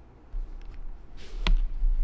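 Handling noise from a hand-held camera being swung around: a low rumble building up, with a single sharp knock about one and a half seconds in.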